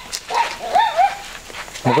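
Short, high-pitched whining cries, wavering up and down in pitch, then a man's voice starting near the end.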